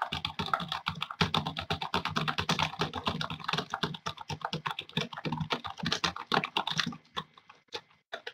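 Fast, continuous typing on a computer keyboard, many keystrokes a second, slackening near the end to a few scattered taps.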